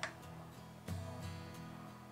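Quiet background music with plucked notes, a new note sounding about a second in.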